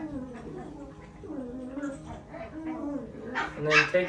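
A dog whining, a pitched whine that wavers up and down and grows louder near the end.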